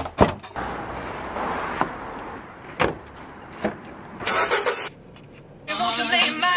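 A door shutting with a couple of sharp knocks, then a car engine running with a steady rumble, broken by a few clicks and a short hiss. Music starts just before the end.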